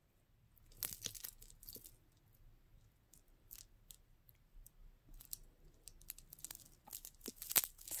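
Faint, scattered small clicks and rustles of a metal chain necklace being handled, a cluster about a second in and another near the end.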